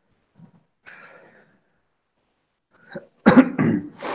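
A person coughing: two loud, quick coughs close together near the end, after fainter short vocal sounds earlier.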